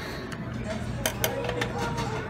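Buffet restaurant room sound: a low steady hum under background voices, with a few light clicks and clinks of dishes or utensils.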